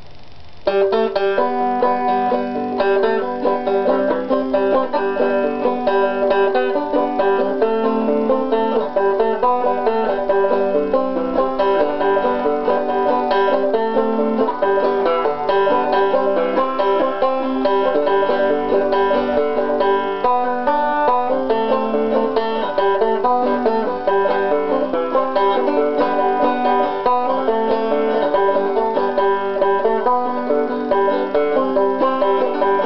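Solo banjo played fingerstyle, a steady picked folk tune starting about half a second in.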